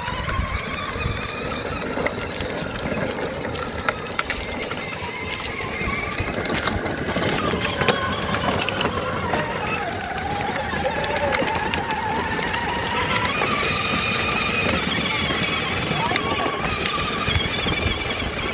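Battery-powered ride-on toy jeep driving: its electric drive motors whine steadily, the pitch drifting lower and back up as it slows and speeds, over the rumble of hard plastic wheels rolling on rough concrete.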